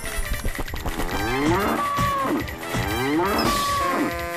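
Cartoon buffalo mooing sound effect: repeated long calls that rise in pitch and then level off, about one a second.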